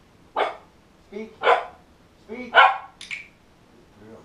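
A four-month-old giant schnoodle puppy barking three times about a second apart, the third bark the loudest, then a shorter fourth bark just after it.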